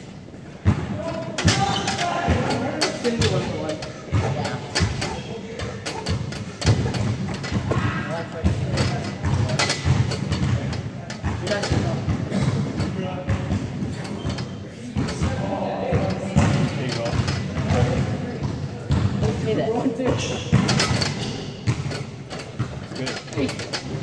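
Indistinct voices talking, with frequent knocks and thuds throughout from people doing pull-ups on a freestanding bar and push-ups on a wooden floor.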